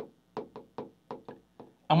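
Stylus tapping and stroking on the glass of a large touchscreen whiteboard as letters are written: a quick series of about ten light knocks, roughly five a second.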